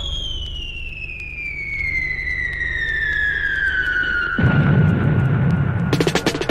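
A falling-whistle sound effect on a 1979 dub reggae record: one tone gliding slowly and steadily downward for about six seconds over a low hum. About four and a half seconds in, a loud rumbling noise swells up beneath it, like a blast at the end of the fall, just before the drums come in.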